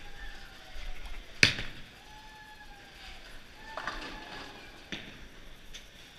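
Bowling alley noise: one sharp, loud crack of an impact about a second and a half in, then a few fainter knocks, with faint voices in the background.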